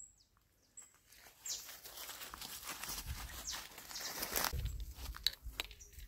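Footsteps through grass and the rustling of leafy tree branches, starting about a second and a half in after a near-silent moment and growing louder with a low rumble toward the end.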